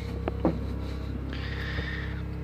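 Steady low hum of a Whynter 13,000 BTU dual-hose portable air conditioner running, with a short knock about half a second in and a soft hiss near the end.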